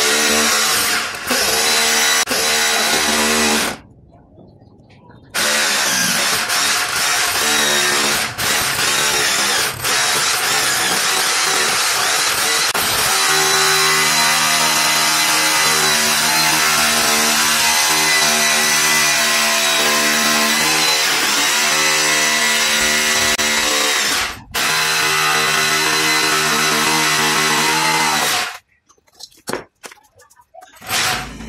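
Corded electric hammer drill boring into a plastered masonry wall, running in long, steady stretches. It stops for about a second and a half about four seconds in, dips briefly several times, and stops near the end.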